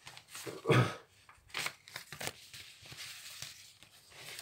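Faint rustling and light clicks of handling noise, with one louder short sound just under a second in.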